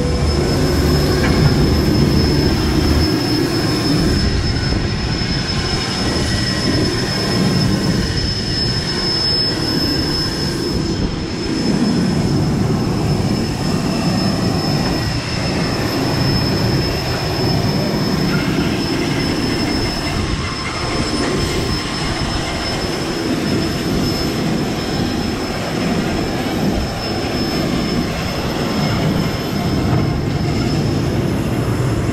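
Airport apron noise: a continuous rushing rumble with a thin, steady high-pitched whine over it, as from aircraft or ground machinery running nearby. A lower hum stops about three seconds in.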